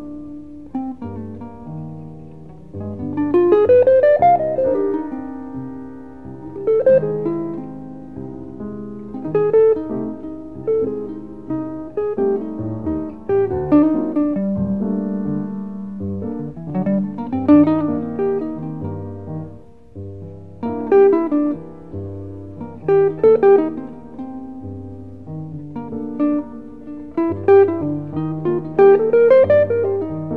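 Jazz duo of guitar and piano from a 1962 studio recording: the guitar plays quick runs that climb in pitch, over held low notes, with no bass or drums.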